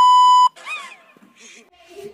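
A steady, high-pitched test-tone beep of the kind played with TV colour bars, cut in as an editing effect. It stops abruptly about half a second in, and a short gliding voice sound follows.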